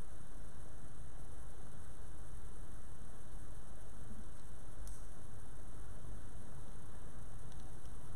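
Steady low hum with a faint hiss: room tone and no speech. There is one faint click about five seconds in.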